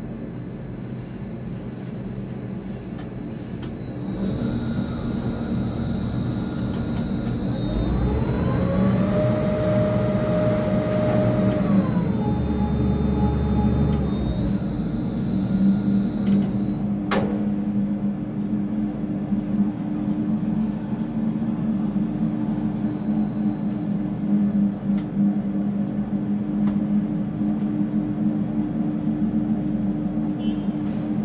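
Tower crane drive motors running with a steady hum while the crane swings and lifts a loaded concrete bucket. Around the middle a motor whine rises in pitch, holds, then falls away, and a single sharp click follows a few seconds later.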